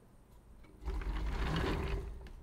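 A stereo microscope on its stand being moved and adjusted by hand: a rumbling mechanical scrape lasting about a second, starting a little under a second in.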